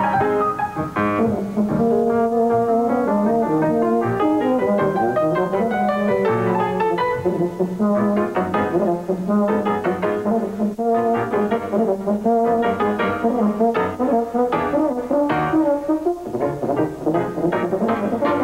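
Euphonium solo with piano accompaniment, playing a busy line of quick, short notes.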